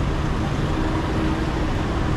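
Steady city street traffic noise, heaviest in the low end, with no distinct event standing out.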